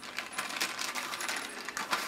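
Small metal sling-swivel screws clinking and jingling in a plastic zip bag as it is handled and opened, a rapid run of light metallic clicks and pings.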